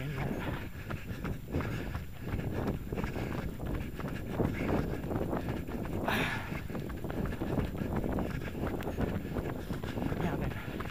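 Running footsteps on a paved lane, a steady rhythm of strides, with a brief rush of noise about six seconds in.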